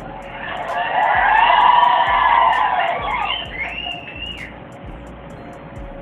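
A voice wailing in long, siren-like glides that rise and fall in pitch, loudest about one to two seconds in and fading by about four and a half seconds, over a faint steady hum.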